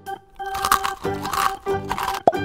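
Crunchy biting sounds, three bites in a row, as a paper doll is made to eat a croissant, over organ-style background music.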